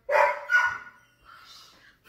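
A dog barking twice, about half a second apart, then fainter near the end.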